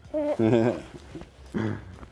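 Two short wordless vocal sounds from a person, about a second apart, the second running into a brief laugh.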